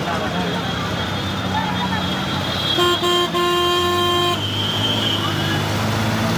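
A vehicle horn honks about three seconds in: two quick toots, then a steady blast of a little over a second. It sounds over constant background noise from the street.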